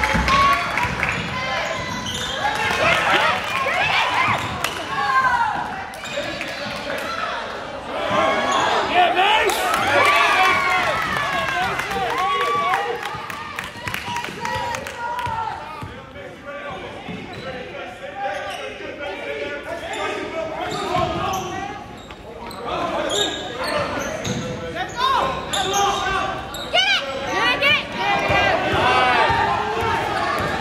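A basketball being dribbled on a hardwood gym court during play, in a large, echoing gym, with voices calling out over it.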